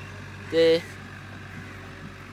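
A man's short voiced sound, one syllable about half a second in, over a steady low hum.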